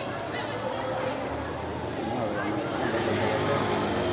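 Distant, indistinct voices over a steady street background, with a low rumble that comes up about a second in.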